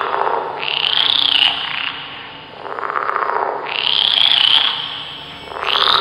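Frogs croaking as a sound effect: a run of repeated calls, each rising and falling in pitch, about a second or two apart.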